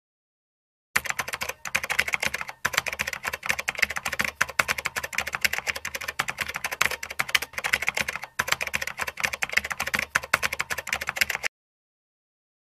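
Rapid computer-keyboard typing clicks, a typing sound effect for text being typed on screen. It starts about a second in, breaks off briefly a few times, and stops abruptly shortly before the end.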